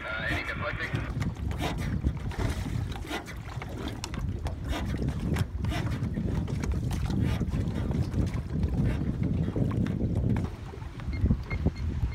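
Wind buffeting the microphone with a steady low rumble and choppy lake water slapping around an open boat, full of irregular sharp gusts and splashes.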